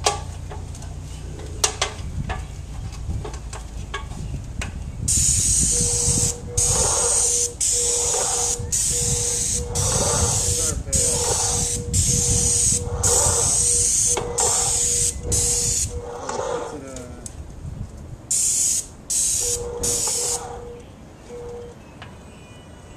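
Paint spray gun hissing in a run of short trigger pulls, each under a second with brief pauses between, about ten in a row, then three shorter pulls near the end, as white paint goes onto house siding.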